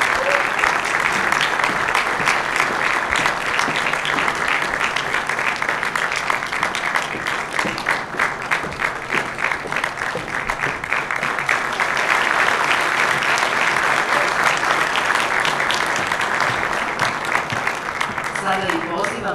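Audience applauding steadily, dense clapping that eases slightly around the middle and swells again a few seconds later.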